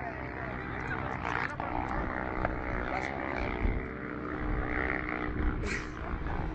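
A vehicle's engine running hard while dune bashing on sand, with a continuous low rumble. Faint voices are heard under it.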